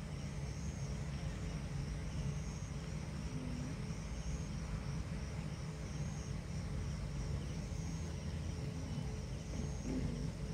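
Steady low rumble of outdoor night background noise, with faint high chirps repeating about once a second.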